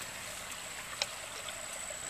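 Crickets and other insects calling in a steady chorus: an even hiss with a thin, steady high-pitched tone over it, and a single faint click about a second in.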